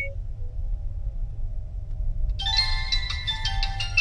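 Low, steady rumble inside a slowly moving minivan's cabin. About two and a half seconds in, background music of quick, bright struck notes comes in over it.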